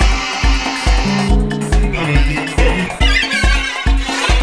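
Instrumental track with a steady kick drum, a little over two beats a second. Around the middle a held tone slides down in pitch, and near the end a high, wavering sound comes in over the beat.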